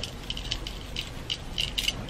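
Faint, irregular light clicking and rattling from hands moving close to the microphone.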